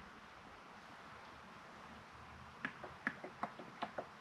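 Faint room hiss, then about two and a half seconds in a quick run of small clicks and glugs as new engine oil starts pouring from a plastic jug into a funnel.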